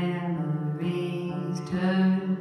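Live song: a woman singing long held notes over electric guitar played through an amplifier, with a strum about a second and a half in.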